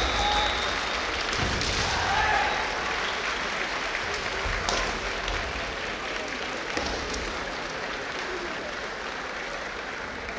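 Audience applause filling a large hall, strongest in the first few seconds and then thinning out, with a few sharp knocks heard through it.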